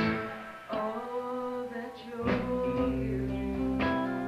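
Guitar-led rock music recording: the band thins out briefly about half a second in, leaving held guitar notes, then bass and guitar come back in fuller a little after two seconds.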